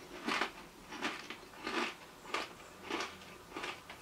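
A person chewing a thick-cut potato crisp with the mouth closed: about six crunches at an even pace.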